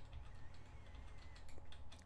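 Faint computer-keyboard keystrokes over a steady low electrical hum.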